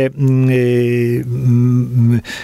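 A man's drawn-out hesitation filler, a held "eee" at one steady low pitch, broken briefly just after a second in and then held again.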